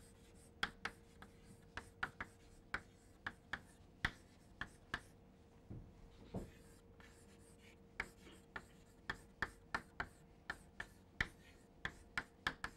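Chalk writing on a chalkboard: faint, short, irregular ticks and taps as each letter stroke is made.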